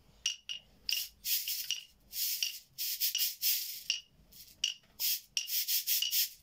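A cabasa, a beaded shaker, rasped and rolled in irregular bursts, a string of short strokes with a few longer scrapes and brief gaps between.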